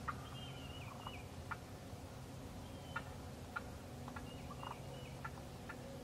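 Wild turkeys calling: a scattered string of short, sharp notes, one every half second to a second.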